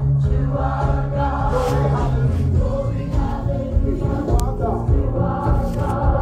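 Gospel worship music: a group of voices singing over a steady bass accompaniment.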